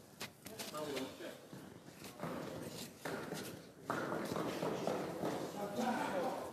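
Indistinct chatter of several people's voices in a hall, with a few light knocks in the first second.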